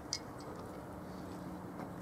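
Quiet outdoor ambience with a short, high bird chirp just after the start and a few fainter high ticks later.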